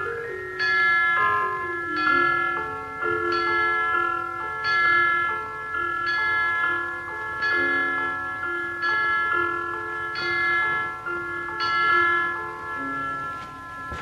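A slow melody of struck, bell-like notes, roughly one a second, each ringing on and fading as the next is struck, with a lower line of notes beneath.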